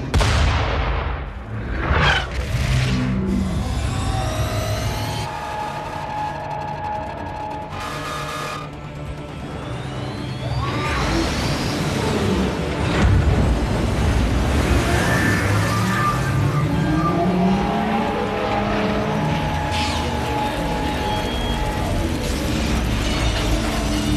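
Action-film sound mix: a ship's deck gun fires right at the start, with a second boom about two seconds in, then dramatic film score over low rumbling and sci-fi mechanical effects.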